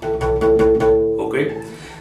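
A Mexican guitarrón's first string, tuned to A (la), plucked once and left to ring for about a second as it fades.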